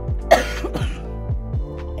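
A woman who is ill coughs twice, the first cough sharp and loudest about a third of a second in, the second smaller, over background music with a steady beat.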